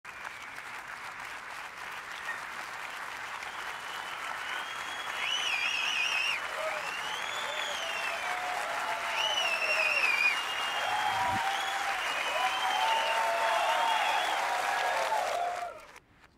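Live concert audience applauding and cheering, played in reverse: the clapping builds up and then cuts off abruptly just before the end, with voices calling out that rise and fall in pitch.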